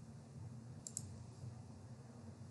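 Computer mouse clicked twice in quick succession, faint, a little under a second in, over a low steady hum.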